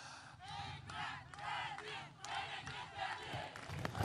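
Large outdoor rally crowd shouting and calling out, many voices overlapping, heard faintly.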